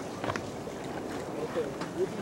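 Sea water washing and wind noise on the microphone, with a few brief knocks or gusts.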